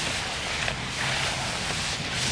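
Nylon hammock fabric and down-filled underquilt rustling as the body shifts and shakes inside them, an even rushing swish that swells a little about halfway through.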